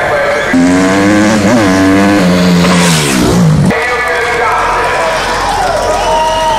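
A car engine revving hard, its pitch rising and falling, with a short hiss of tyre noise about three seconds in; the revs drop and the sound cuts off suddenly near four seconds.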